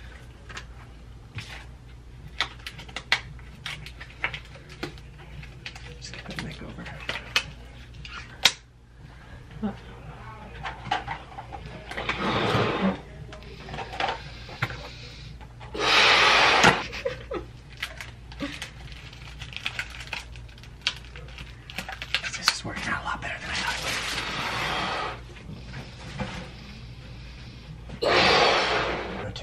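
A latex balloon being blown up by mouth: long breaths rushing into it, three of them over the second half with the loudest in the middle, after many small clicks and rustles of the balloons being handled and filled.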